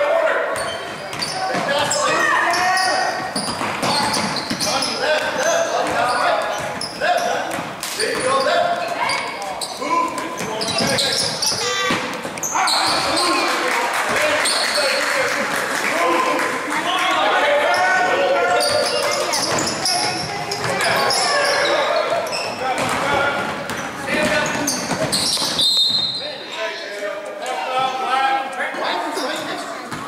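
A basketball dribbled on a hardwood gym floor during a youth game, with many overlapping voices from players and spectators calling out and echoing in the hall. Near the end a short, high referee's whistle sounds as play stops.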